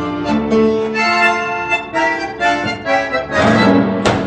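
Argentine tango music played over a PA loudspeaker, with a bandoneon carrying the melody in rhythmic strokes over strings. It swells louder just before the end.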